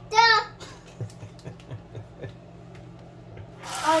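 A short spoken word, then a few faint taps as a gravy-mix packet is handled over a stainless saucepan; near the end water starts running with a steady hiss.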